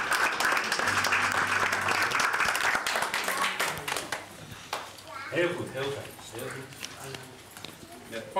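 Audience applauding, the clapping dying away after about four seconds, followed by quiet talking among the crowd.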